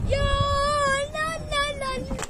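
A child's high voice holding one long, slightly wavering note for nearly two seconds.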